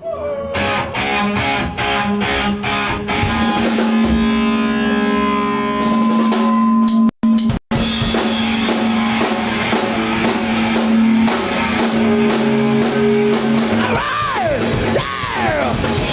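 A live rock band plays the instrumental intro of a song: a drum kit with electric guitars and bass holding a chord. The sound cuts out twice for a split second about halfway through, and two falling swoops in pitch come near the end.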